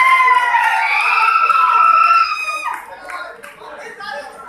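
A person's voice held in one long drawn-out call with slowly sliding pitch, cut off a little before three seconds in, followed by quieter chatter.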